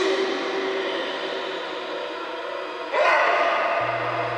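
Eerie horror-drama sound effect: sustained, echoing drone of layered held tones. A fresh swell of tones comes in about three seconds in, and a low hum joins near the end.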